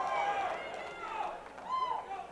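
The end of a ring announcer's long drawn-out call over an arena PA, fading out just after the start. Scattered shouts and calls from the crowd follow.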